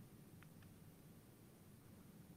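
Near silence: faint room tone with a low hum, and two very faint ticks about half a second in.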